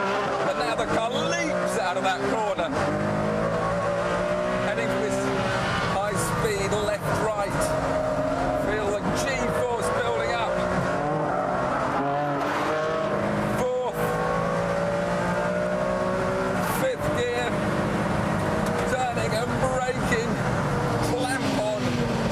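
Ferrari Enzo's 6-litre V12 at hard throttle on a race track, its note climbing in pitch through each gear and broken by several quick gear changes.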